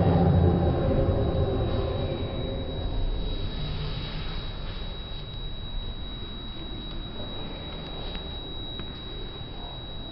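Slowed-down, distorted sound of a sports hall from slow-motion playback: a low, drawn-out rumble fades over the first few seconds into a dull hiss, with a steady thin high whistle throughout and a few faint clicks.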